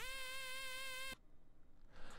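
A single synth lead note from the Serum software synthesizer, sliding up into pitch at the start, held for about a second, then cut off suddenly.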